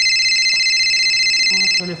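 Phone ringing with a high, trilling ring. The ring lasts about two seconds, then stops as a voice begins near the end.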